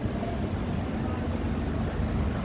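Road traffic on a city street: a steady low rumble with a faint engine hum.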